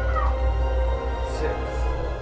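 Energy Connoisseur bookshelf and center-channel speakers playing a film soundtrack with no subwoofer: a steady deep drone under the score, with a girl's crying wail rising and falling near the start.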